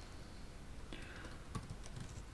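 Faint typing on a computer keyboard, a few key clicks mostly in the second half.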